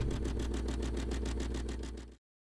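Designed sound effect for an animated logo intro: a steady low hum with a fast, even pulsing of about ten pulses a second, fading away near the end.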